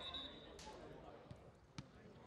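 Faint outdoor ambience from a football match pitch, with a single sharp knock a little before the end.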